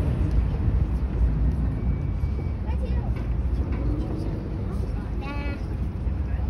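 Outdoor crowd ambience: a steady low rumble with faint chatter of passers-by, and a short high-pitched call a little after five seconds in.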